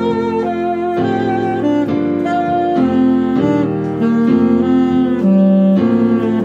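Saxophone playing the G major pentatonic scale pattern type 1 in paired skips (soh-re, mi-doh, re-la, doh-soh), slow and even at about two notes a second, over a backing track of sustained chords.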